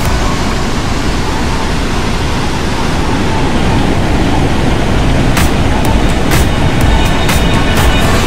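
Background music over the steady rush of water pouring over a mill-dam weir, with a few sharp beats in the second half.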